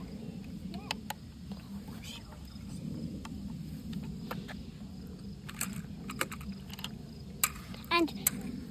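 Scattered light clicks and taps from a small plastic drone being handled, irregular and brief, over a low murmur of faint background voices.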